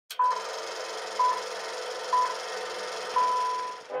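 Film-leader countdown sound effect: a single high beep about once a second, three short beeps and then a longer one near the end, over a steady hiss and a low hum.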